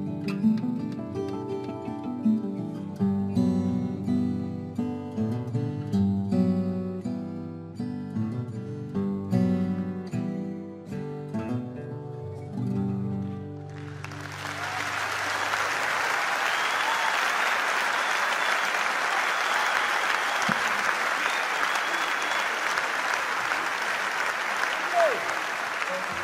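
Acoustic guitar played fingerstyle, a run of plucked notes ending about fourteen seconds in. A large audience then applauds steadily.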